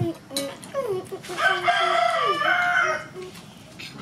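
A rooster crowing once: a few short gliding notes lead into one long, loud held call of nearly two seconds that ends about three seconds in.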